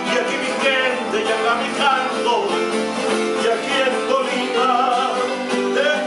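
A man singing with his own strummed acoustic guitar accompaniment, voice and strings going on without a break.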